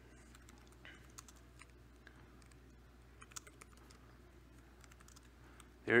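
Faint, irregular typing on a computer keyboard, scattered keystrokes as terminal commands are entered.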